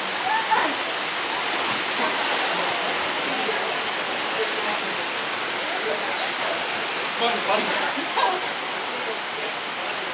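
Small waterfall pouring into a rock pool: a steady, even rushing of falling water.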